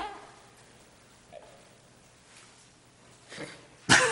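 Quiet meeting-room tone with a few faint, brief sounds, then just before the end a sharp burst close to the microphone as a man starts to laugh.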